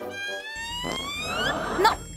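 A comedic rising sound effect: one pitched tone with overtones gliding steadily upward for about a second and a half, then cutting off as a woman's voice says 'Non'.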